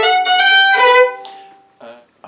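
Fiddle bowing a short phrase with a fourth-finger drone: two strings sounding together, a held drone note under melody notes that change, then the sound fades out about a second and a half in.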